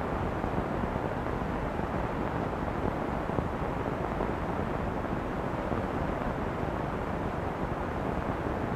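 Steady background noise, strongest in the low range, with no distinct sounds standing out.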